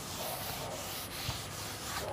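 A board duster wiping chalk off a chalkboard in repeated rubbing strokes, a soft even scrubbing.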